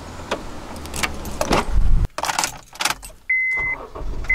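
Car key working the driver-door lock, with clicks, key jangling and the clunk of the door opening. Near the end the car's warning chime gives one steady high beep.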